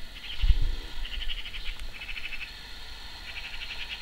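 An animal calling in short, high-pitched, rapidly pulsing trills, four bursts in all, with a low thump about half a second in.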